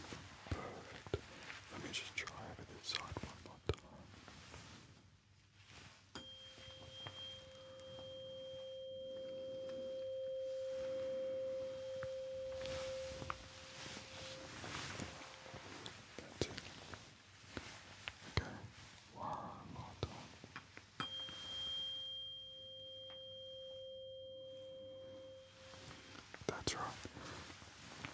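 Tuning fork struck twice, each time ringing with a quiet, steady pure tone that slowly dies away, the first for about nine seconds, the second for about five. It is used as a hearing check, with soft handling clicks and rustles in between.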